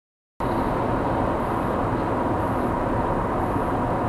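Steady road and tyre noise inside a moving Toyota Prius, picked up by the dashcam microphone, with a faint steady hum. It cuts in abruptly a split second in, after a brief dead-silent gap.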